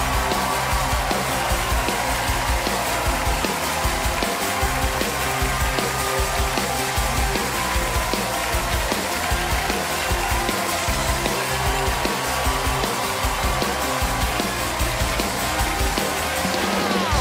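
A live house band playing upbeat walk-on music with a steady, repeating bass line, over a studio audience cheering and applauding.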